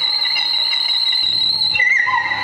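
Live electronic noise music from a table rig of electronics and effects pedals: a steady high-pitched whine held over a bed of other sustained tones, with a low hum that comes and goes underneath. Near the end the whine breaks off and gives way to a lower held tone.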